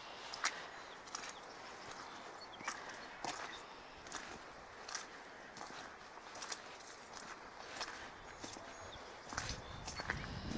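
Footsteps on a wet, muddy dirt path: short irregular steps about one every half second to second. A low rumble comes up near the end.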